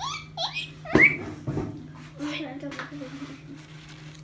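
Guinea pig giving several short, high, rising squeaks, the loudest about a second in together with a bump, followed by lower voice-like sounds.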